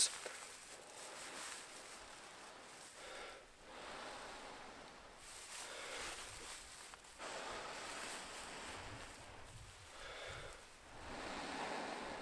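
Repeated long breaths blown into a dry bracken tinder nest holding a smouldering char-cloth ember, to coax it into flame. Each blow is a soft, faint rushing hiss lasting a second or two, rising and dying away several times.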